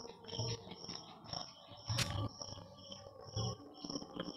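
Crickets chirping in a steady, evenly pulsing rhythm, with a dull low thump about once a second.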